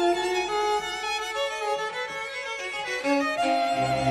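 A solo violin plays a sustained, flowing melodic line over an orchestra. Low notes come in near the end.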